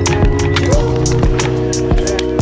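Background music with a steady beat and held bass and melody notes.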